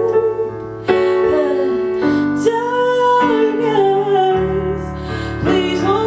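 A woman singing live, holding long notes that bend in pitch, while accompanying herself on a digital piano with chords struck about once a second.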